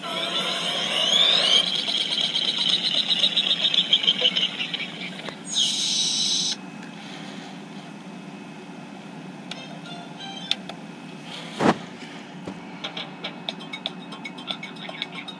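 A show's electronic transition music with sweeping, sparkling effects, heard through a tablet's small speaker. It is loud for about the first six seconds and ends in a bright burst that cuts off suddenly. After that it goes quieter, with one sharp knock near the end.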